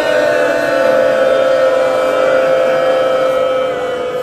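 Voices at a Muharram mourning recitation holding one long, steady lament note together at several pitches at once. The sound eases off slightly near the end.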